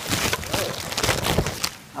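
Water poured onto hot rocks, hissing and crackling as it flashes to steam, mixed with close rustling of a plastic tarp against the microphone. The noise comes in uneven bursts and eases off near the end.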